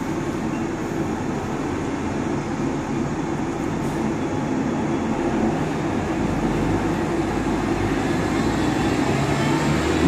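Road traffic on a multi-lane road: a steady wash of passing cars that grows slowly louder. A deeper engine rumble builds over the last few seconds as a double-decker bus and a minibus come by.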